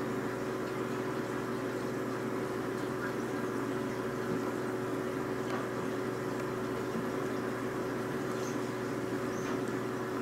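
A steady low hum with a faint constant tone, like a small motor or appliance running, with a few faint ticks.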